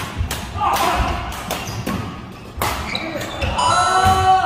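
Badminton rally: sharp racket strikes on the shuttlecock and footwork on a wooden court floor, ending with a player's voice or a shoe squeak near the end as the point finishes.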